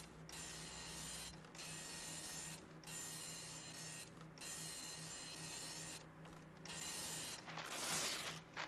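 Impact printer printing text line by line: bursts of mechanical printing noise, each about a second long, with brief pauses between lines. The last burst, near the end, is the loudest.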